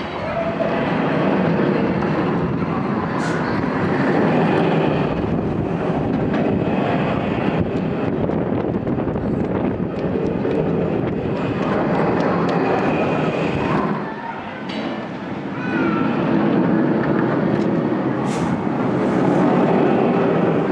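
Tube roller coaster train running along its steel tube track, a continuous rumble that swells and fades as the cars pass, dipping briefly about three-quarters of the way through.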